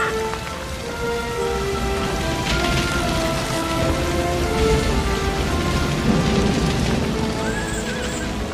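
Slow orchestral film score with long held notes over steady, heavy rain. A short wavering cry comes near the end.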